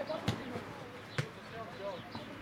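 Football being kicked twice on a grass pitch, two sharp thuds about a second apart, with players' voices calling in the background.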